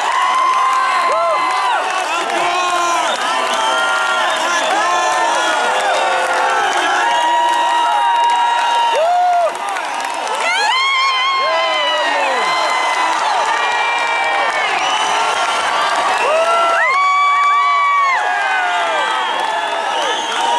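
Concert audience cheering and screaming: many overlapping yells and whoops, with a few long held shrieks.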